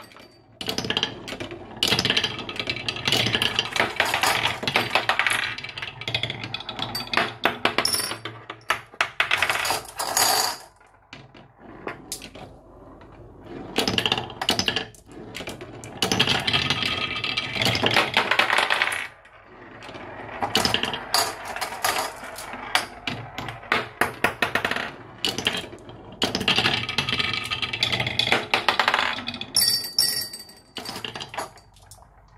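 Glass marbles rolling and clattering down a wooden marble run, dropping through wooden blocks and rattling along a zigzag wooden groove. Dense runs of clicking come in several waves, with short lulls between them.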